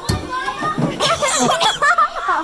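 Children's voices talking and calling out over each other, with a single sharp thump right at the start.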